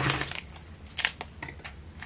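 Hot glue and a thin plastic food container being pulled and flexed by hand to free a cured silicone mould: a scrape at the start, then a few sharp crackling clicks, the loudest about a second in.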